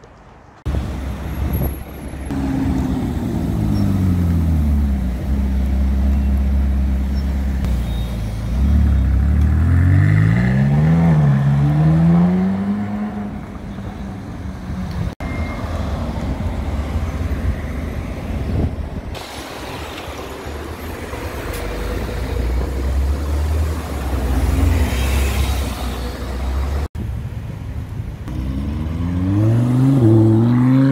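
Supercar engines in a run of short clips. A Mercedes SLS AMG V8 idles and is blipped several times, its revs rising and falling. After a cut a Mercedes-AMG GT R runs among street traffic, and near the end a Lamborghini Huracán Spyder's V10 revs up.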